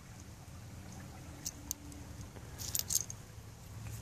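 Small chipped stone flakes clicking lightly against one another and the gravel as a hand picks through them: two clicks about a second and a half in and a quick cluster near the three-second mark, over a low steady background rumble.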